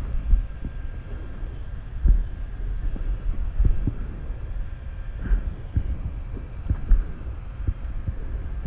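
A dirt bike rolling slowly down a rocky trail, with irregular low thuds about once or twice a second as it goes over rocks, over a low rumble of wind on the helmet-camera microphone.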